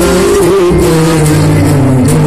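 Live stage music played loud through a PA, the accompaniment holding long sustained notes, with the duet's singing in it.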